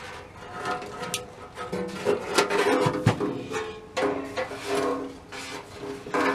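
Metal chassis of an NRI Model 34 signal tracer rubbing and knocking against its rusty steel cabinet as it is pulled out, with several sharp clicks. Music-like tones, held and changing every second or so, run underneath.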